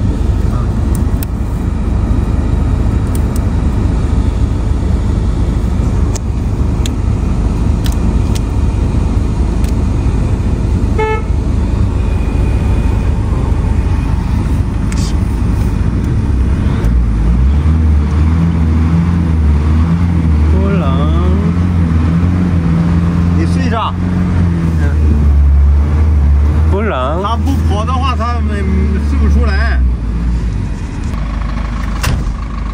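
Ford van's engine running at idle, heard from inside the cab as a steady low rumble. About halfway through, a steady low hum joins it and holds to the end.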